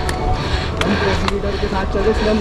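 Indistinct voices talking, with a few sharp clicks from footsteps and a trekking pole on a stony trail.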